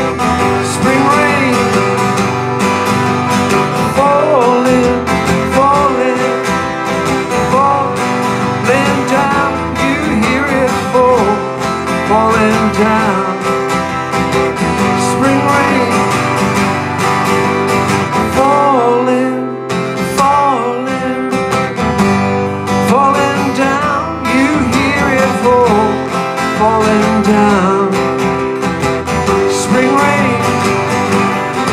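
Acoustic guitar strummed steadily, with a gliding melody line above the chords. The playing briefly thins about two-thirds of the way in.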